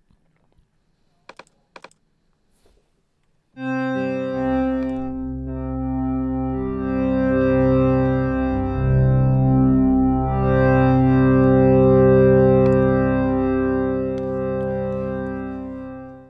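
Additive synth pad from Native Instruments FM8, built from six slightly detuned sine, square and sawtooth operators, playing sustained chords. The chords change a few times and die away near the end. Before them, a few seconds of near silence with a couple of faint clicks.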